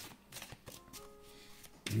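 A tarot deck being shuffled by hand: a few faint, soft card clicks and rustles.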